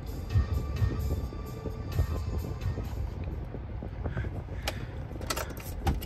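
Music playing from a 2017 GMC 3500 Denali's factory radio, heard inside the cab, with a few faint clicks near the end.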